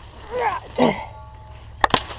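Short vocal grunts and sounds from a man, then near the end a sharp double crack as a machete blade strikes a small pine sapling.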